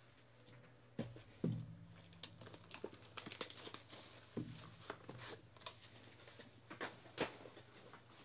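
Clear plastic shrink wrap being torn and crinkled off a trading-card box, with a few sharp knocks as the box is handled on the table.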